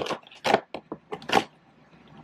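A cardboard advent-calendar door being torn open by hand along its perforations: a quick run of about five short rips and crackles over a second and a half.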